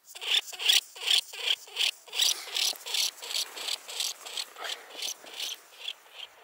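Norway lemming giving a rapid series of short, harsh squeaking calls, about three a second. They are loudest in the first two seconds, then come shorter and fainter. These are the alarm and threat calls of a frightened lemming facing an intruder.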